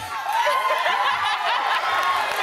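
People laughing and chuckling, louder from a moment in.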